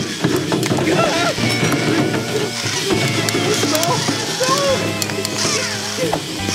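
Cartoon power drill working the motor bolts, with a rapid run of clicks and rattles over a steady low hum, mixed with background music. The drill is loosening the bolts instead of tightening them. A short laugh comes right at the start.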